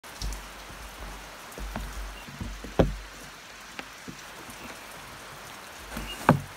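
A book being handled and set down on a wooden table: a few irregular taps and knocks with low bumps, the loudest about three seconds in.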